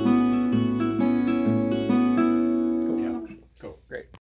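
Acoustic guitar fingerpicked slowly in a steady tempo: an alternating thumb bass line with pinched treble notes ringing over it. The playing stops a little after three seconds in.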